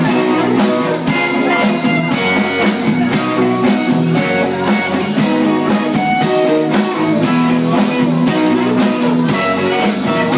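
Live rock band playing an instrumental passage with no singing: electric guitars, bass guitar and drum kit with a steady beat.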